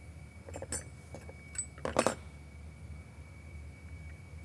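Small filler-valve parts clinking and tapping as they are handled and set down on a tray. A few light clicks come in the first two seconds, with the loudest clink about two seconds in.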